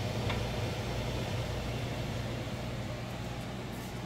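A steady low mechanical hum with hiss, with a faint click of glass canning jars being handled with a jar lifter in a pressure canner about a third of a second in.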